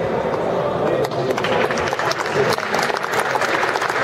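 Audience in a sports hall chattering, with scattered clapping that starts about a second in and grows into applause.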